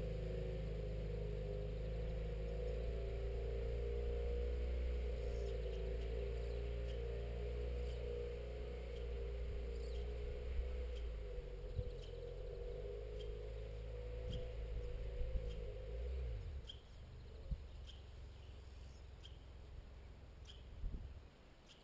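A small bird chirping over and over, about once a second, above a low steady hum that fades away about three-quarters of the way through.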